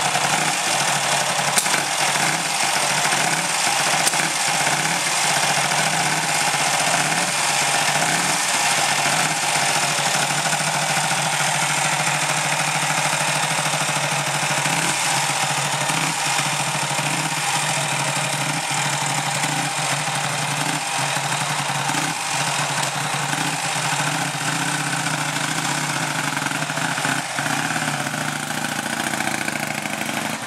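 Vincent Black Shadow's 998 cc V-twin engine idling steadily, with a slightly uneven beat. Near the end the motorcycle pulls away and moves off.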